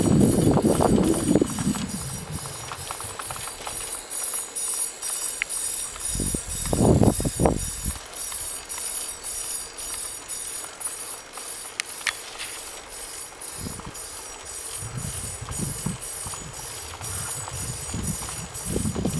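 Wind buffeting the microphone in gusts, strongest at the start, around six to eight seconds in and again near the end, over a steady, fast, faint ticking.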